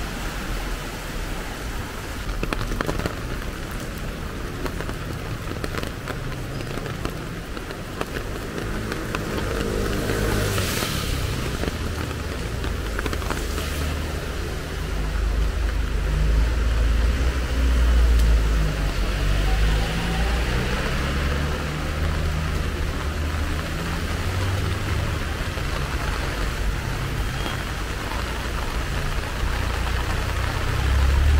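Steady rain on a city street, with traffic on the wet road; a brief louder hiss comes about ten seconds in, and a low rumble grows louder from about halfway.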